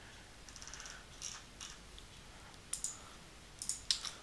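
Faint computer mouse clicks: a quick run of small ticks about half a second in, then a handful of single clicks spread through the rest.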